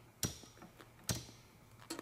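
VW shift rod moved by hand in its hanger bushing, giving two light clicks about a second apart and a fainter one near the end.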